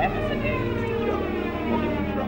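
A siren winding down: one long wail falling slowly and steadily in pitch, over a low steady hum.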